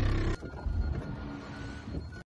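Minivan engine and road noise heard from inside the cabin while it drives. It drops sharply in level about a third of a second in, then continues as a quieter steady rumble.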